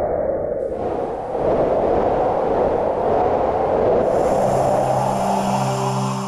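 TV channel ident sound design: a loud, continuous whoosh that swells and sweeps, joined about four and a half seconds in by a low sustained chord, and starting to fade at the end.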